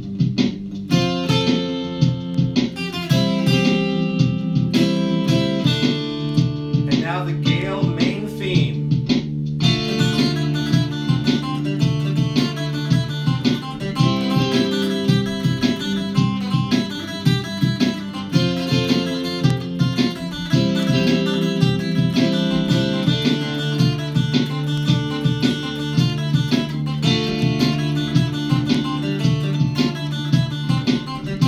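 Mountain dulcimer playing a plucked melody over looped bass-line and chord parts played back by a looper pedal. Held low bass notes run underneath, and the sound gets brighter and fuller about ten seconds in.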